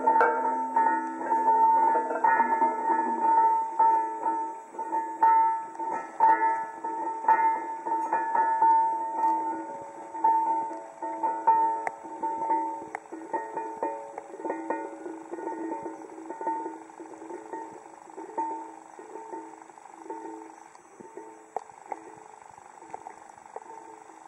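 Stone balls rolling round in the carved hollows of tuned stone slabs, making the stone ring. Several steady pitched tones pulse unevenly as the balls go round, then gradually die away through the second half.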